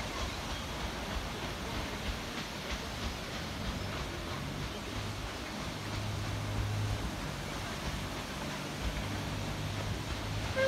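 Paddle steamer Canberra passing on the river: a steady wash of noise from its paddle wheels and engine, with a low hum coming in about halfway through.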